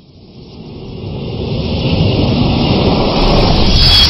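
Logo-animation sound effect: a rushing whoosh that swells over about two seconds and holds loud, then a bright hit near the end that leaves a thin high ringing tone.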